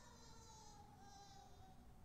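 Near silence: room tone in a large church, with a faint hum and a faint tone that slowly falls in pitch.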